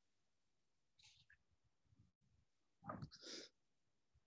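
Near silence on an open video-conference line, broken by two faint short noises, one about a second in and a slightly louder, hissy one about three seconds in.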